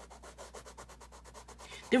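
White oil-based colored pencil scratching across colouring-book paper in rapid, even back-and-forth strokes, about ten a second, laying white over blue to blend it into a new shade.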